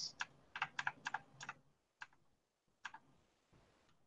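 Faint computer keyboard keystrokes: a quick run of about eight taps in the first second and a half, then two single taps about two and three seconds in.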